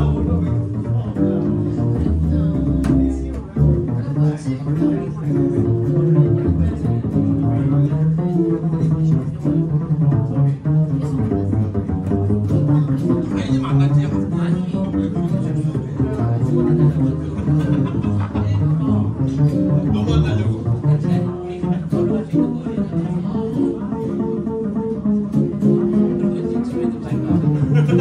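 Upright double bass plucked in a walking, melodic jazz solo, with an electric guitar softly comping chords underneath.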